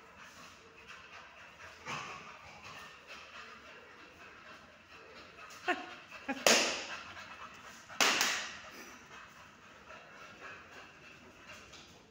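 A dog panting during play, with two loud, sharp noises a little past the middle, about a second and a half apart.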